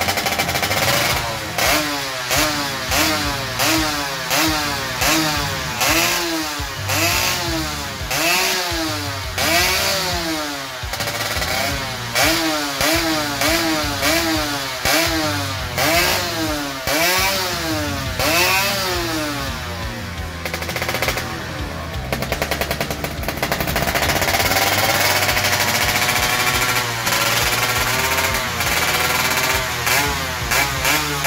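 Yamaha F1ZR's ported single-cylinder two-stroke engine being revved by hand in short blips, about one a second, its pitch rising and falling each time. Late on it holds a steady higher speed for a few seconds, then the blips resume.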